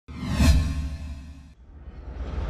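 An intro whoosh sound effect with a musical tone, swelling to a peak about half a second in, then fading and cutting off suddenly about a second and a half in.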